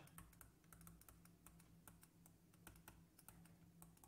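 Faint, quick, irregular clicks and taps of a stylus writing on a tablet or touchscreen, over a low steady hum.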